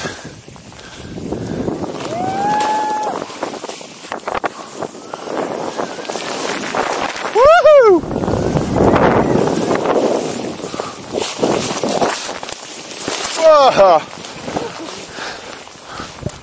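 Rushing hiss of snow spray and wind while riding down through deep powder snow, swelling and fading with each turn. A person whoops loudly about halfway through and again near the end.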